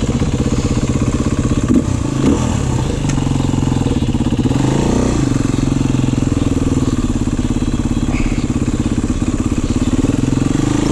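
Beta enduro dirt bike engine running at low revs, with a short rev up and back down about halfway through.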